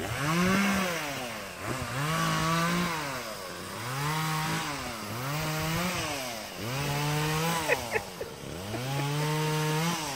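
A small engine revving up and down over and over, about six times, each rev rising quickly, holding for about a second, then dropping away. Two brief clicks come about eight seconds in.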